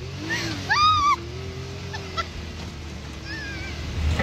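Side-by-side off-road vehicle's engine running with a steady low drone as it drives a dirt trail, with a short, high, rising-and-falling yell from a rider about a second in.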